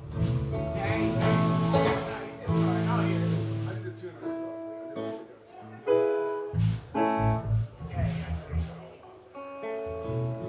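Live band music with electric or acoustic guitar to the fore over low bass notes, played in uneven phrases with short lulls.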